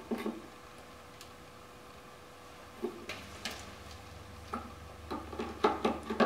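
Scattered light clicks and taps as small plastic bottles and hand tools are handled on a workbench, coming more often toward the end.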